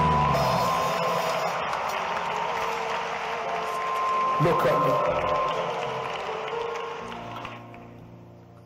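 Live church band music with long held notes, its heavy bass dropping out at the start, with voices over it. The music fades out near the end.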